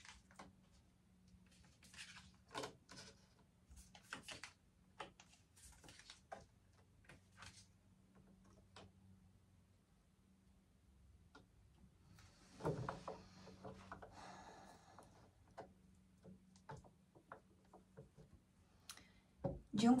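Tarot cards being drawn from a deck and laid down on a wooden table: soft, irregular clicks and taps, with a louder rustle of card handling about twelve seconds in, over a faint steady hum.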